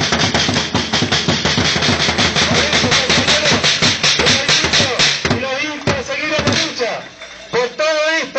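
Large marching drums beaten with mallets in a fast, steady beat, with voices underneath; after about five seconds the drumming breaks up into scattered hits.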